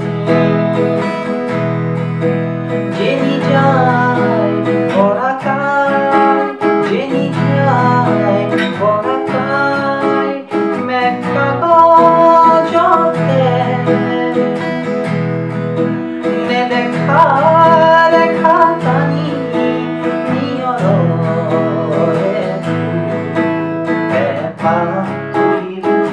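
Cutaway acoustic guitar strummed through chords in E major, with a man singing the melody along with it. The chord moves from E major to C sharp minor near the end.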